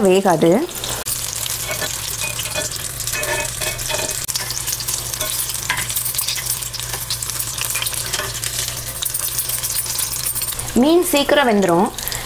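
Battered fish pieces deep-frying in hot oil at medium heat, a steady sizzle. Partway through, a steel ladle stirs and turns the pieces in the pan.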